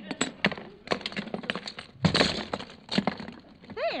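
Radio sound effect of a bag of toys being dumped out onto a table: a run of clattering knocks and rattles, with a bigger crash about two seconds in.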